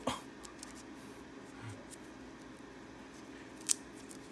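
Gloved hands quietly handling a fabric harness strap and a plastic buckle, with faint rustles and one sharp click near the end.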